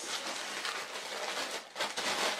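A small baby-clothes storage pouch being opened and handled: a continuous rustle that drops away briefly near the end and starts again.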